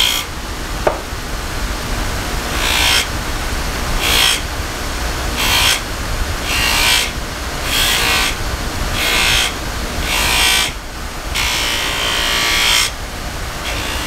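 Powertec bench grinder running with a buffing wheel while the wooden handle of an old belt knife is pressed against it in repeated passes to put a finish on it. Each pass brings a brief swell of hiss over the steady motor hum, about every second and a half, and the last pass near the end is longer.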